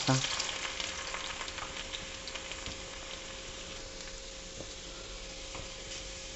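Chopped garlic sizzling and crackling in hot oil in an iron kadai. It is loudest at first and settles to a steady sizzle.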